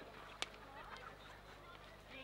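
Field hockey stick striking the ball once, a single sharp crack about half a second in, with faint distant shouts from players.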